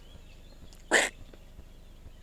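A person sneezing once, a short loud burst about a second in.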